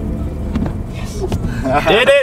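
Low road rumble inside a moving car, fading early on; near the end a man's voice breaks in with a loud, pitch-bending call.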